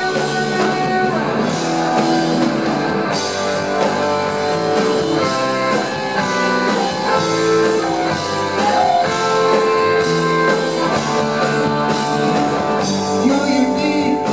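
Live rock band playing loudly: electric guitars over electric bass and a drum kit.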